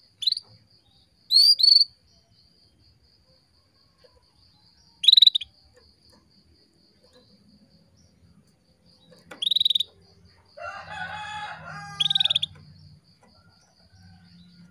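Female canary calling: short, sharp sweeping chirps every few seconds, once as a quick pair, the kind of female call used to stir a male canary into song. A steady, fast-pulsing high trill runs underneath, and a longer, lower call of about two seconds comes near the end.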